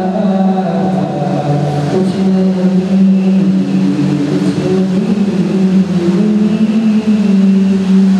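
A young man's voice singing a naat, an Urdu devotional poem in praise of the Prophet, drawing out long held notes.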